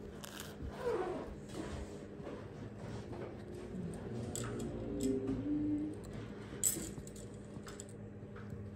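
Light handling of a small plastic pill pot and capsules, with a few soft clicks and a sharper tap near seven seconds. A faint wavering tone comes and goes in the middle, over a steady low hum.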